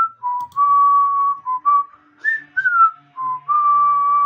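A woman whistling a short tune through pursed lips. It has a few quick notes, a high note that slides down in the middle, and two long held notes.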